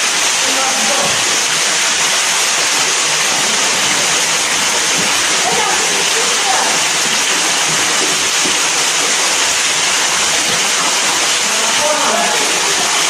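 Underground waterfall pouring down a cave shaft: a loud, steady rush of falling water.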